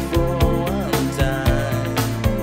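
Music from a vinyl record played through a Rane MP2015 rotary DJ mixer: a track with a steady beat of about two kicks a second and a melodic line over it.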